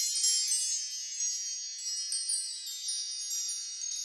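Shimmering chime sound effect of an animated logo intro: many high, bell-like tones ringing together and slowly fading.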